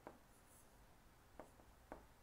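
A few faint, short ticks of a stylus writing on a digital board, three light taps against near silence.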